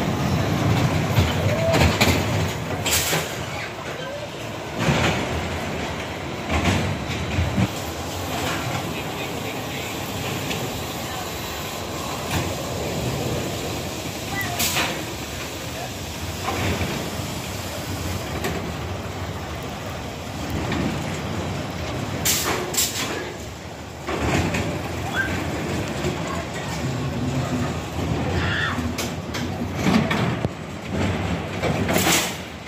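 Spinning mouse roller coaster car running along its steel track: a steady rolling rumble of wheels on rail, with a few sharp clacks.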